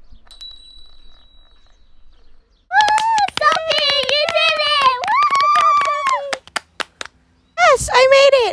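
A high voice calling out in long, drawn-out cheers, with sharp claps through it and a quick run of claps as it stops; the first couple of seconds are quiet.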